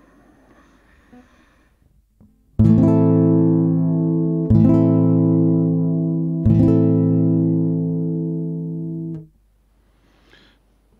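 Cort AC160CFTL nylon-string classical guitar heard through its pickup with the preamp's bass control turned fully up: the same chord strummed three times, about two seconds apart, each left to ring, then damped about a second before the end.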